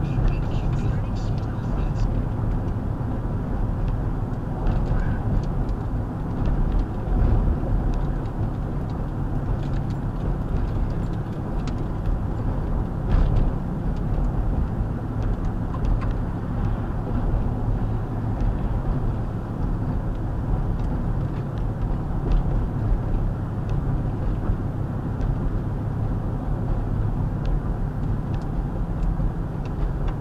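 Car cabin noise while driving at about 35 mph: steady engine and road rumble, with a few faint ticks.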